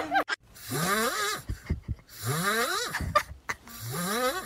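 A sleeping cat snoring. Each snore is a rising, whistling breath under a second long, coming about every second and a half.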